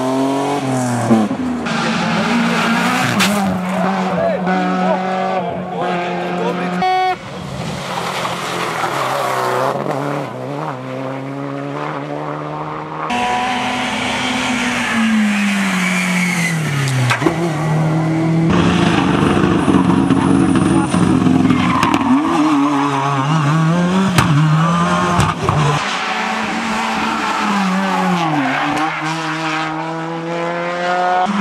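A series of rally cars, among them BMW 3 Series saloons, driven hard on a tarmac stage. The engines rev up and down repeatedly through gear changes and braking as each car takes a bend, in short clips cut one after another.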